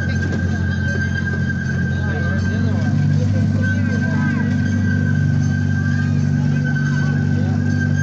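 Miniature park train running steadily, heard from aboard: a low engine drone that grows slightly fuller a couple of seconds in, with a thin, steady high whine over it. Faint voices are heard in the distance.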